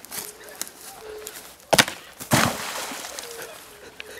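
A crude homemade axe striking a charred, burnt tree stump with a sharp crack, followed a moment later by a longer crash and splintering as the stump breaks and falls over into shallow water.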